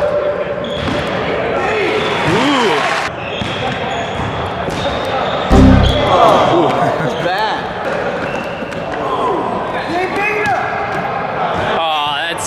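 A basketball bouncing on a hardwood gym floor during a pickup game, with the knocks echoing in a large gym. A loud thump comes about five and a half seconds in.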